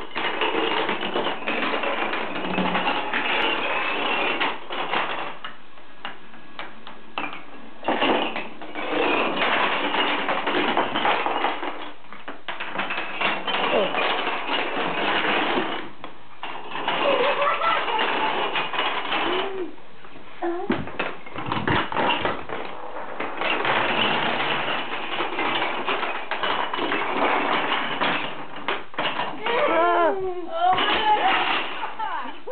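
Kapla wooden planks toppling one after another like dominoes on a wooden floor: a dense clatter of small wooden clicks in long stretches, broken by a few short lulls.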